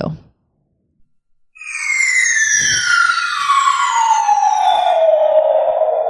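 Falling-bomb sound effect played from a soundboard. After about a second of silence, a long whistle starts about a second and a half in and slides steadily down in pitch for over four seconds.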